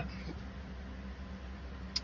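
Steady low hum with faint hiss as background, and one short click near the end.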